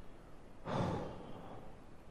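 A man's breathy exhale, like a sigh, close to a headset microphone, starting about two-thirds of a second in and fading out over about half a second.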